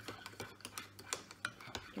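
Metal teaspoons stirring in ceramic mugs of hot milk, giving faint, quick, irregular clinks as they tap the sides while drinking chocolate powder is mixed in.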